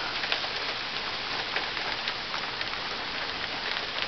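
Heavy thunderstorm rain pouring steadily, with scattered sharp clicks of single drops landing close by.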